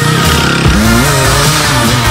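Loud background music with a Sherco dirt bike's engine revving through it, its pitch rising sharply about two-thirds of a second in as the bike powers out of a dusty corner.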